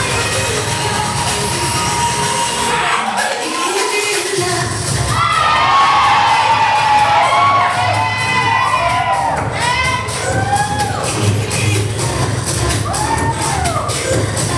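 Spectators cheering and shouting over loud dance music. The music's bass drops out briefly about three seconds in, then the cheering swells with many high rising-and-falling shouts.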